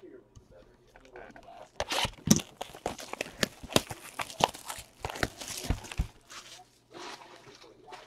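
Clear plastic shrink wrap being torn and crinkled off a cardboard trading card box: a dense run of crackling starting about two seconds in and dying down around six seconds.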